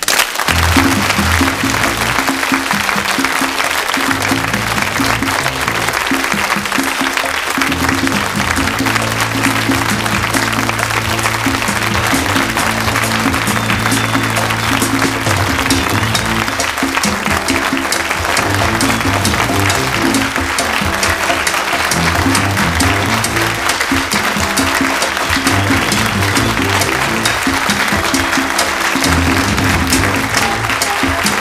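Closing theme music over an audience applauding throughout.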